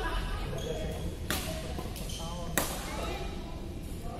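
Badminton rackets striking a shuttlecock during a doubles rally: two sharp hits just over a second apart, over background chatter.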